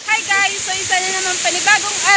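Steady rushing of a waterfall close by, with a woman's voice speaking over it.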